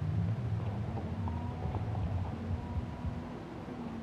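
A low, steady motor hum.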